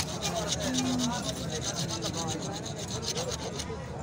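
A twisted-wire saw cutting through a cow's horn near the base, in fast, even back-and-forth rasping strokes, pausing briefly near the end. Voices murmur underneath.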